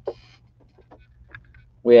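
Faint, scattered light knocks and rustles of cardboard figure boxes being handled, over a low steady hum, with a man's voice starting near the end.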